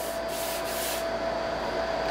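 Scotch-Brite pad scrubbing rust off the milling machine table with WD-40, in rough back-and-forth strokes that stop about a second in. A steady hum continues underneath.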